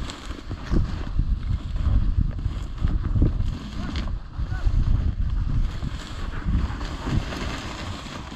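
Wind buffeting the microphone in gusts, over the rustle of dry cattails and tall grass brushing against a hunter walking through them.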